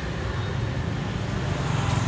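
Honda SH Mode 125 scooter's single-cylinder engine idling with a steady low hum.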